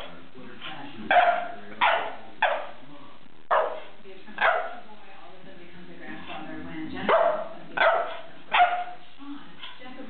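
A dog barking in short, sharp barks: a run of about five, a pause of about two seconds, then three more near the end.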